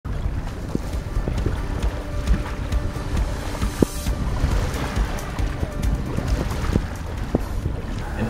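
Wind buffeting the microphone on a sailboat under way, a low rumble with the wash of water, under background music.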